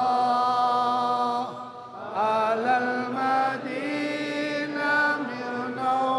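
A solo voice chanting an Arabic devotional song of blessings on the Prophet (salawat), with long held notes and ornamented turns in pitch, and a short pause for breath about two seconds in.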